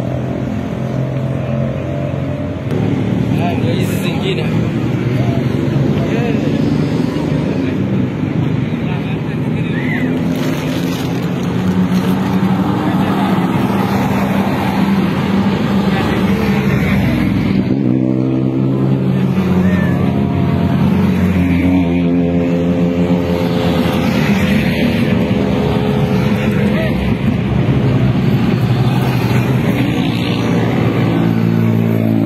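Rally cars driving past one after another, their engines running loud, with the engine note rising twice in the second half as a car accelerates by. People's voices are mixed in.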